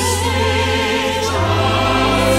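Stage-musical choir and orchestra, with a voice holding a high note with a wide vibrato over sustained chords. The harmony shifts to a new chord about one and a half seconds in.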